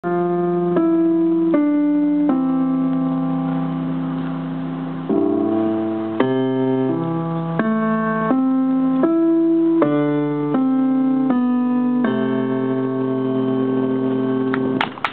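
Electric keyboard played through an amplifier speaker: a slow tune of held notes over lower bass notes, a new note about every second, ending on a long held note.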